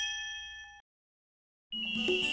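A bright, bell-like ding from a logo animation, several pure tones ringing together and fading, cut off abruptly less than a second in. After about a second of silence, background music starts near the end.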